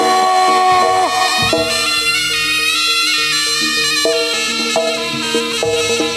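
Live jaranan ensemble music: a reedy Javanese shawm (slompret) plays a melody, holding a long note that bends down about a second in, then moving through shorter notes, over drum strokes.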